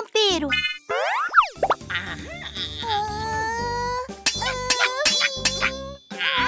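Cartoon sound effects over children's background music: a springy boing that slides down and then sharply up in pitch about a second in, followed by a long held tone.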